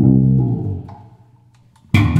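1965 Fender Jazz Bass: a single finger-plucked note rings out and fades away within about a second, then after a short pause the next note is struck sharply near the end.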